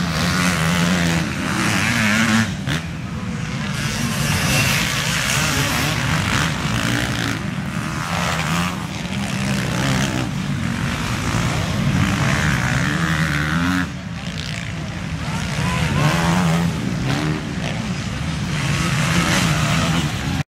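Motocross bikes racing past on a dirt track, engines revving up and falling back again and again as the riders work through the gears, with a brief drop in level about two-thirds of the way through.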